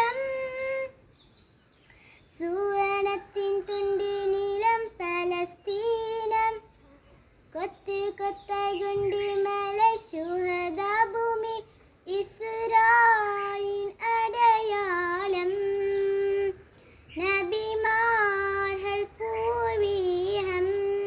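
A young girl singing a qaseeda, an Islamic devotional song, unaccompanied. She sings in long held phrases with ornamented bends in pitch, pausing briefly for breath about a second in, near seven seconds and again near sixteen seconds.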